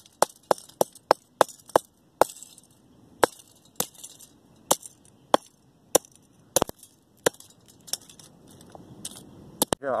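Hammer blows pounding a scrap copper pipe to bend and flatten it. A quick run of about eight sharp strikes in the first two seconds is followed by slower, irregular single blows, with a double strike a little past the middle.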